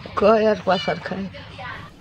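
An elderly woman's voice in four short phrases with a wavering, high pitch, lamenting in grief.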